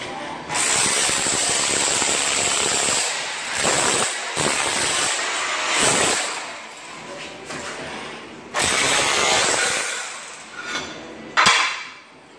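A corded handheld power tool running in bursts of one to three seconds as it chips up ceramic floor tile and the adhesive beneath, with a sharp knock near the end.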